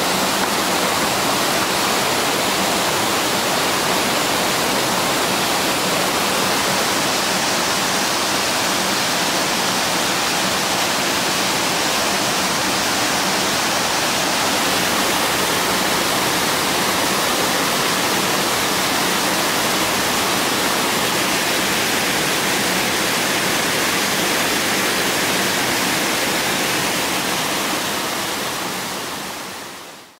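Steady rushing of a small waterfall cascading down stepped rock ledges, fading out near the end.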